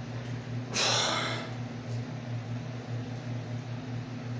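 A man breathes out hard once, about a second in, straining while lifting a dumbbell overhead. A steady low hum runs underneath.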